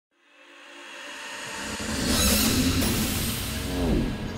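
Cinematic trailer sound design: an electronic swell fades in from silence and builds to a loud whoosh about two seconds in, over pulsing bass. Near the end a downward pitch sweep lands on the logo reveal.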